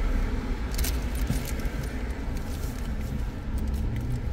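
Steady low rumble inside a stationary car's cabin, with a few brief light jingles and clicks, the clearest about a second in.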